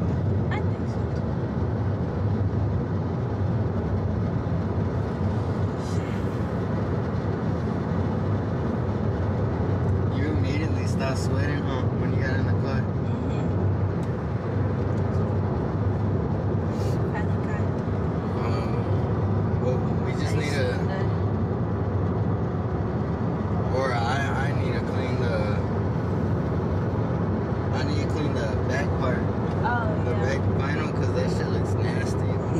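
Steady low road and engine rumble inside a moving car's cabin, with short bits of voices now and then.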